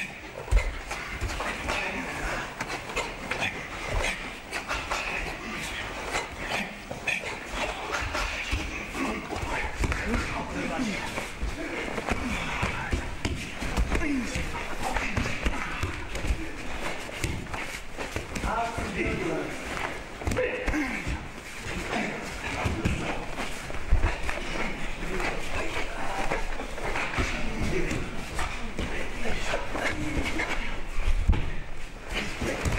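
A group karate training session in a large hall: many short thuds and knocks from bare feet striking and sliding on the mats, under a steady spread of indistinct voices and shouts.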